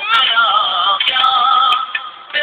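A song with a held, wavering vocal melody, sounding thin and lacking all high treble.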